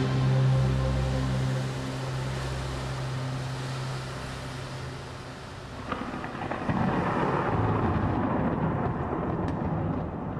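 A low sustained chord from a doom metal track rings out and fades over the first five seconds or so. Then a rumble of thunder with a hiss of rain builds up and carries the rest of the way.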